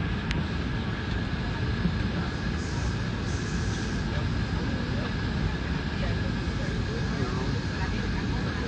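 A steady low rumbling noise with a faint high tone held above it, and muffled, indistinct voices underneath.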